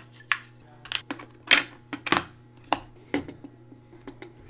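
Sharp plastic clicks and taps, about eight spread irregularly, the loudest about a second and a half in, as batteries are pressed into the battery compartment of a La Crosse wireless outdoor temperature sensor and its plastic slide cover is handled shut.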